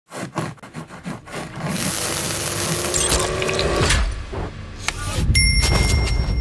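Logo-intro sound effects: a quick run of clicks, then a whoosh that swells for a couple of seconds and breaks into glitchy digital stutters with deep bass underneath near the end.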